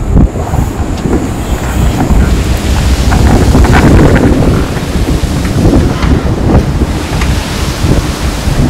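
Loud, steady storm-at-sea noise: strong wind and breaking waves, from a rough-sea background track laid in during editing.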